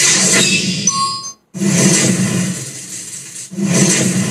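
Film production-logo intro sting from the start of a song video: a loud rushing sound effect with short chime-like dings and a brief held tone. It cuts out abruptly for an instant about one and a half seconds in, then the rushing resumes.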